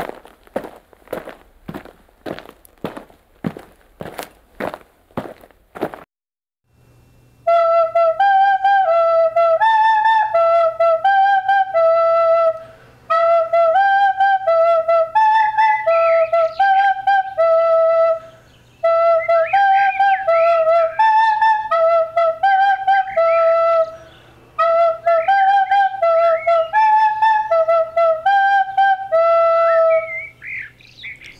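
Music: about six seconds of regular percussive hits, roughly two a second, then after a short silence a flute melody of short stepping notes in repeating phrases over a low steady hum.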